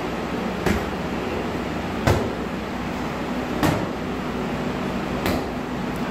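Padded boxing gloves and focus mitts smacking together in four sharp hits about a second and a half apart, over a steady low hum.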